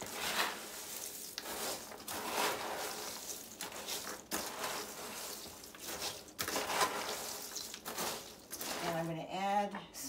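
A wooden spoon stirring dry snack mix of Crispix cereal, pretzels, popcorn and peanuts in a large plastic bowl: an uneven rustling, crunching rattle as the pieces are tossed and coated with a butter-syrup glaze. A woman's voice starts near the end.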